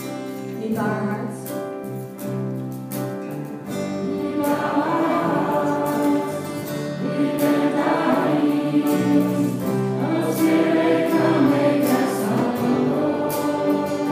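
Congregation singing a worship song together with instrumental accompaniment that includes a violin. Held chords carry the opening, and the group singing grows fuller from about four seconds in.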